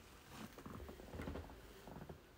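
Faint clicking and scraping of a small screwdriver turning a screw out of the bottom panel of a Dell Latitude E6440 laptop, a run of small clicks starting about half a second in.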